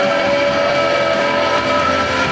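A girl singing into a handheld microphone, holding a long note, amplified over backing music.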